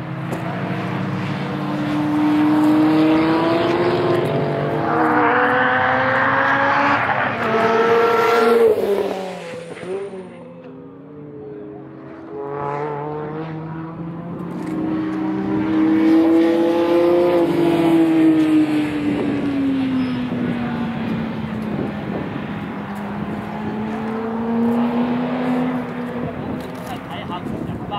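Cars being driven hard on a race circuit: one engine climbs in pitch and volume to a peak about a third of the way in, then drops away. After a brief lull, another car's engine builds to a peak about two-thirds of the way through and falls slowly in pitch as it moves off.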